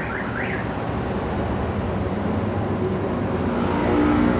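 Steady rushing background noise, with a few short rising chirps in the first half second.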